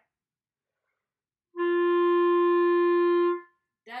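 Selmer Paris Présence B-flat clarinet of grenadilla wood playing one steady sustained throat G (sounding concert F) for about two seconds, starting about a second and a half in. It is a tuning check, and the note sits dead on pitch right away.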